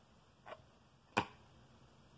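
Two short clicks in a quiet small room: a faint one about half a second in and a sharper one just after a second, from tarot cards being handled and turned.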